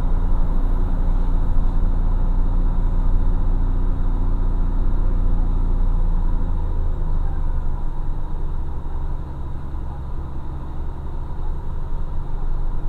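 A vehicle's engine and road noise heard from inside the cab while driving a mountain highway, a steady low rumble. Its note changes about six and a half seconds in and it runs a little quieter after about eight seconds.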